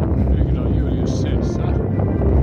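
Steady low rumble of wind on a phone microphone, with faint indistinct speech and two short hissing sounds about a second in.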